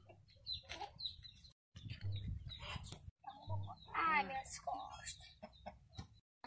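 Domestic chickens clucking, with one louder, longer call about four seconds in.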